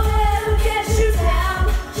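Live pop dance music over an open-air PA system: a steady bass beat under sung vocals.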